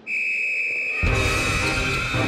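A coach's metal whistle blown in one long, steady blast, starting a dodgeball game. About a second in, loud music comes in underneath it.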